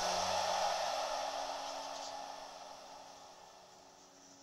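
A hiss left at the end of the background music track, fading away steadily over a few seconds.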